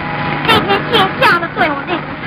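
A young woman's voice in quick, sharp syllables, several falling steeply in pitch, over a steady low hum.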